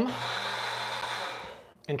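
A person's long breathy sigh with a low voiced hum in it, trailing off over about a second and a half.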